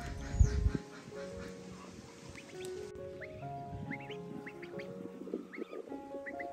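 Ducklings peeping in short rising chirps, many of them from about halfway through, over background music. A low rumble with a thump comes in the first second.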